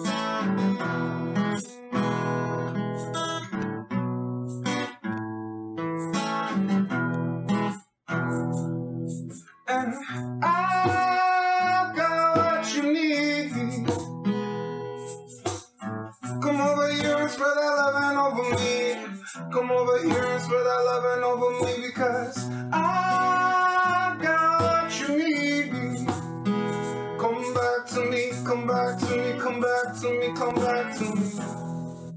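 Acoustic guitar playing a song, with a man's voice singing along from about ten seconds in.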